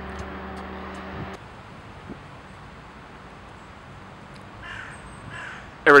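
A steady low hum that cuts off abruptly about a second in, then a quieter outdoor background with two short harsh bird calls near the end.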